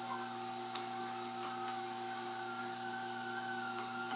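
Horizontal masticating (auger) juicer running with a steady motor hum as apple pieces are pressed down its feed chute with the plunger. Two faint clicks come through, one about a second in and one near the end.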